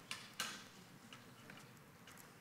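Faint clicking of a laptop being operated by hand: two sharper clicks in the first half second, then two lighter ones about a second and a second and a half in.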